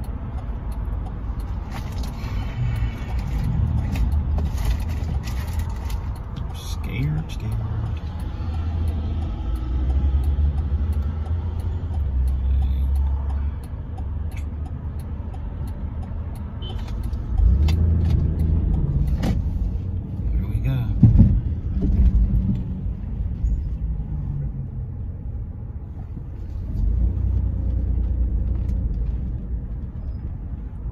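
Car cabin noise on the move: low engine and road rumble that swells and eases several times, with scattered small clicks and knocks.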